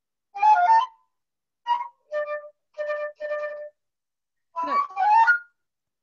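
Solo flute playing a choppy passage of short, separated notes, several repeated on the same pitch, with silence between them.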